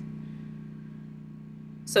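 A steady low mechanical hum, even and unchanging, with a voice starting right at the end.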